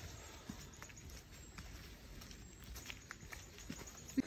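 Faint footsteps on a forest trail: soft, irregular steps and small clicks over a low rumble.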